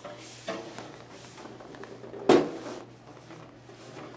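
Handling noise from a DVR recorder's metal case as it is moved and lowered, with a small knock about half a second in and one louder knock a little over two seconds in. A faint steady hum runs underneath.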